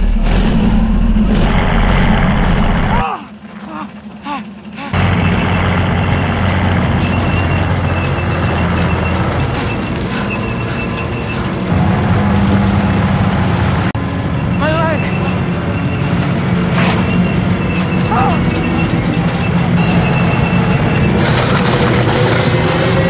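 Tank engine running with a steady deep rumble as the tracked vehicle advances. The rumble drops away about three seconds in and returns about two seconds later. Two short high squeals cut through it past the middle.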